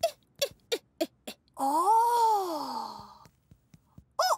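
Cartoon sound effects: five quick blips, each dropping in pitch, about three a second, like comic footsteps, then a long pitched tone that rises and falls.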